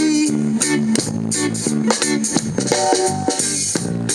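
Live reggae band playing an instrumental passage between sung lines: electric guitar and bass guitar over a drum kit keeping a steady beat.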